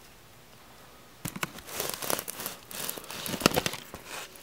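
Crinkling and crackling handling noise, an irregular run of sharp clicks starting about a second in.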